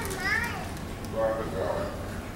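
A young child's high-pitched voice calling out twice in short, gliding sounds, over a low steady room hum.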